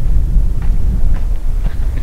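Wind buffeting the camera's microphone: a loud, uneven low rumble with little else above it.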